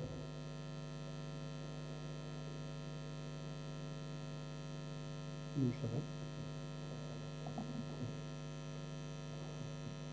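Steady electrical mains hum, a stack of even tones with no change. A brief faint sound comes a little over halfway through.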